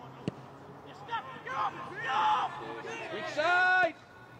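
Football match pitch sound: a single sharp knock of a ball being struck shortly in, then players' raised voices calling out. The last call is held and is the loudest, just before the end.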